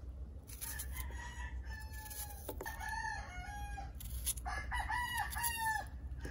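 Rooster crowing twice in the background: one long crow, then a second, louder one near the end. Behind it come a few crisp cuts as a kitchen knife slices through a red onion held in the hand.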